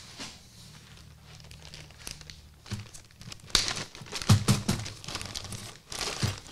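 Clear plastic hardware bag crinkling as it is handled, a dense run of sharp crackles starting about three and a half seconds in, with a few soft knocks among them.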